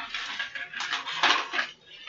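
Objects being handled close to the microphone: a run of rustles, scrapes and clinks, loudest a little past the middle.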